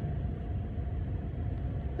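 Steady low rumble of outdoor background noise, with no distinct event in it.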